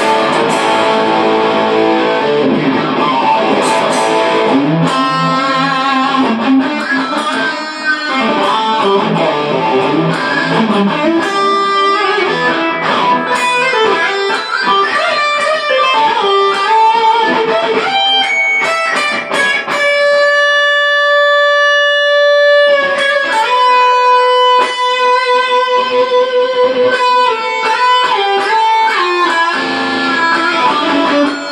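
Custom-built electric guitar played amplified: fast lead runs and picked phrases. About two-thirds of the way in there is one long held note, and a second sustained note with a slight waver follows just after.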